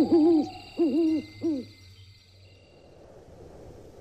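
Owl hooting, three short hoots in quick succession within the first two seconds, each rising and falling in pitch, over faint crickets; a sound effect in the audio drama.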